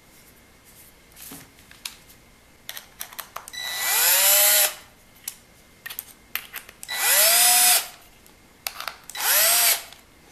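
Cordless drill-driver driving screws into a wooden hub in three short runs, its motor whine rising in pitch as each run starts. Light clicks and taps from the parts being handled come before and between the runs.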